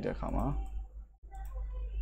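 Computer mouse clicking briefly about midway, over a steady low hum.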